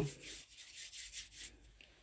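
A faint rustling, rubbing noise with no clear pitch. It is strongest in the first half-second and then fades to soft scattered bumps.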